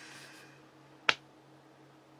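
A single sharp click about a second in, over a faint steady hum.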